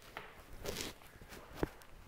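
A few footsteps on a hard floor as a man steps back from a chalkboard, with soft knocks; the sharpest step comes about a second and a half in.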